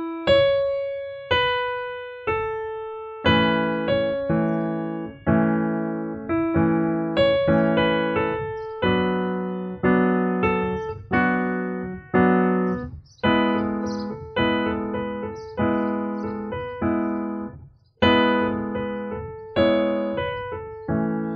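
Yamaha portable keyboard playing a slow melody on its trumpet voice. Single notes come first, and left-hand chords join under the melody after about three seconds.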